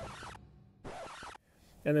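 Two short bursts of hissing, static-like noise, each about half a second long with abrupt starts and stops: a digital glitch transition sound effect.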